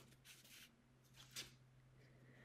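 Near silence, with faint rustles of oracle cards being handled and spread; the clearest comes about one and a half seconds in.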